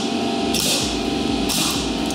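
Pneumatic framing nailer driving nails through a king stud into a 4x6 header. Each shot comes with a short hiss of air: one carries over the start and another fires about a second and a half in.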